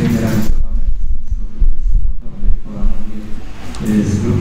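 A low, uneven rumble with irregular soft thumps and nothing higher in pitch, loudest around the middle.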